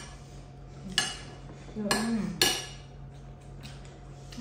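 Metal spoon clinking against ceramic dishes as food is served from a bowl: three sharp clinks with a short ring, about a second in, at two seconds and just after.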